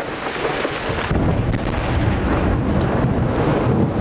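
Steady rain hiss, then about a second in a long, deep rumble of thunder starts and keeps rolling.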